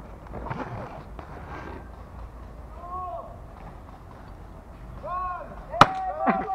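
Distant voices calling out, twice, over outdoor background noise, then one sharp crack near the end.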